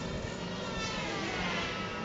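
Robotic lawnmower running across grass, its motors giving a steady whine. The whine slides down in pitch through the second half.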